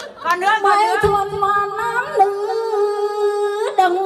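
A woman singing a Tày-Nùng folk song into a microphone. After a few short wavering phrases she holds one long steady note from about a second in and ends it with a sharp upward slide near the end.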